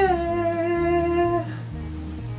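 A man's voice holding one long, high sung note that dips slightly in pitch just after it starts and stops about one and a half seconds in. Soft background music with guitar and a low bass line plays under it and runs on alone afterwards.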